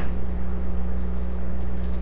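Steady low hum with a faint hiss behind it, unchanging throughout; no other event.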